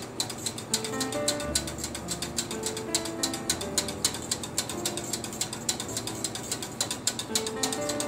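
A wire whisk rapidly clicking and rattling against the sides and bottom of a stainless-steel saucepan while thickened gravy is whisked.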